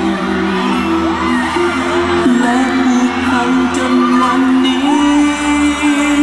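Pop music playing loudly over the stage sound system, with a crowd of fans whooping and shrieking over it.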